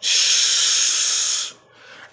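A man's loud hiss of breath close to the microphone, steady for about a second and a half and then dying away.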